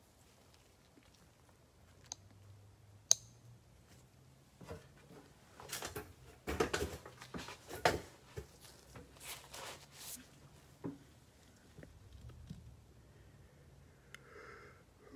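Faint handling noises close to the microphone: a sharp click about three seconds in, then several seconds of irregular rustling and scuffing, with a few scattered small clicks.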